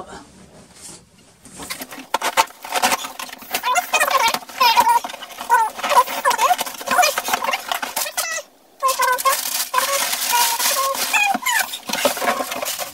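Crumpled packing paper and cardboard rustling and crinkling as a shipping box is opened and its paper stuffing pulled out, starting about two seconds in, with squeaky scraping sounds mixed in and a short pause about two-thirds of the way through.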